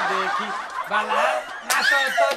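Voices with laughter: snickering and chuckling over a voice.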